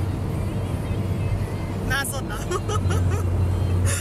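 Road noise inside a moving car's cabin: a steady low rumble, with music playing underneath it.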